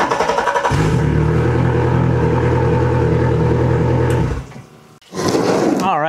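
115 hp Yamaha outboard motor being cranked by its starter and catching, then running at a steady idle for about three and a half seconds before stopping suddenly. A man's voice comes in near the end.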